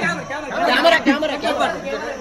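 Several people talking over one another: overlapping, unintelligible chatter of voices.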